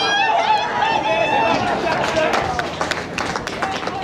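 Rugby players and sideline spectators shouting and calling out during open play, with a patter of short knocks from players' feet and bodies as the tackle goes in during the second half.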